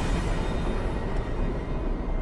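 A steady low rumble with no voices, mechanical in character.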